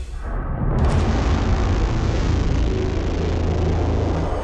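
Low, rumbling, explosion-like sound effect that swells in within the first second and then holds steady.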